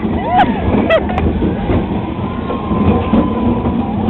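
Roller coaster car running along its track, a loud steady rumble and rattle, with riders giving short yells in the first second.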